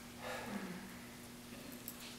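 Quiet room tone with a steady low hum; a soft breath comes about a quarter of a second in, and a faint click near the end.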